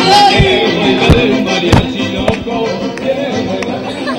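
Mariachi band playing live: trumpets over strummed guitars with a steady bass line.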